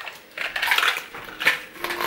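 Rustling of grocery packaging as items are handled at a kitchen counter, with a sharp click about a second and a half in as something is set down.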